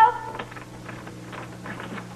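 A woman's called word trails off at the start. Then there is quiet room tone with a steady low hum and a few faint light taps.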